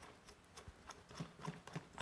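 Faint, irregular light clicks and taps from the OE Lido OG hand coffee grinder's parts as it is handled and unscrewed for disassembly.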